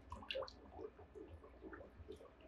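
Water trickling and dripping off the roots of a net pot lifted from a hydroponic bucket, falling back into the nutrient water: faint, irregular drips.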